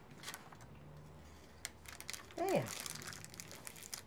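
Faint crinkling of paper cupcake liners as hands press them flat onto glued paper.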